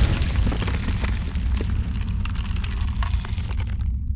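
Cinematic logo-sting sound effect: a low explosion-like rumble with crackling over it. The crackle cuts off just before the end, leaving the low rumble to fade.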